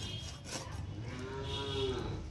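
A single drawn-out animal call, about a second long, in the second half, over a steady low hum.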